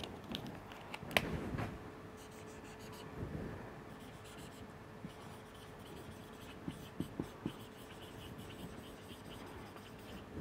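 Felt-tip marker writing and drawing on a whiteboard, faint scratchy strokes, with one sharp tick about a second in and a few lighter ticks around seven seconds.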